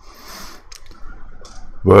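A short hiss, then a few faint clicks in a pause in speech, with a man's voice starting near the end.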